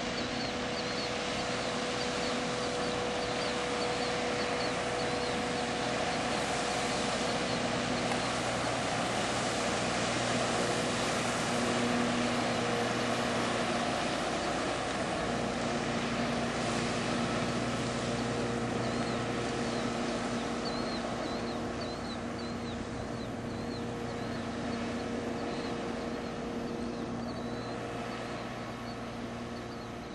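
Motorboat engine running steadily at planing speed, with the rush of hull and spray through the water. The sound swells as the boat comes closest, about halfway through, then fades toward the end.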